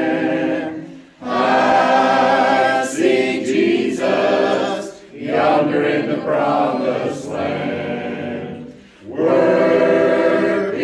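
Church congregation singing a hymn together, in phrases broken by short breaks about a second in, about five seconds in and near the end.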